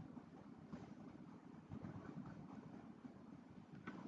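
Near silence: faint low background noise from a muted online-meeting feed, with a few faint ticks.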